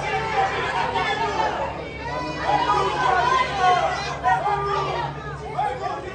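Chatter of several people talking at once, overlapping voices with no single clear speaker.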